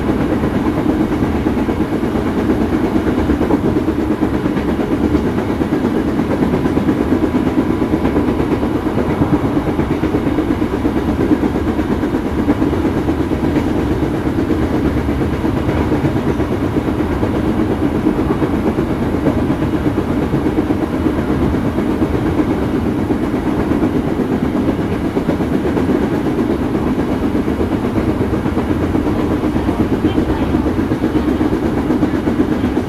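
KRL Commuterline electric commuter train running along the track, heard from inside the car: a steady, unbroken rumble of wheels on rail and car-body noise.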